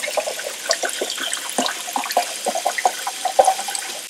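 Liquid poured from a plastic bottle into a plastic film developing tank, a stream splashing into the filling tank with many short, bubbly plinks, over the steady splash of a running kitchen faucet.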